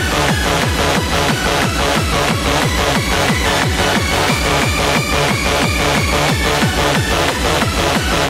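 Hard electronic dance music mixed on vinyl turntables: a fast, steady kick drum, each hit dropping in pitch, under busy percussion, with a high synth note held for a couple of seconds midway.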